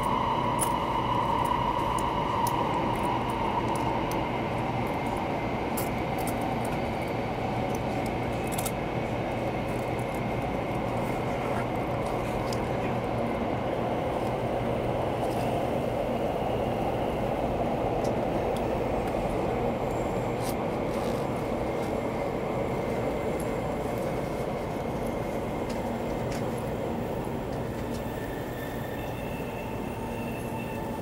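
Taiwan High Speed Rail 700T train heard from inside the car, running through a tunnel and slowing for a station. A steady rumble runs under a motor whine that slowly falls in pitch as the train loses speed.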